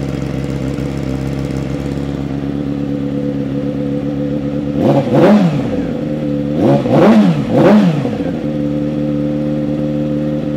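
A 2015 Yamaha YZF-R6's inline-four idling steadily through an aftermarket M4 exhaust. The throttle is blipped three times: once about halfway through, then twice in quick succession a couple of seconds later, each time the revs rising and falling straight back to idle.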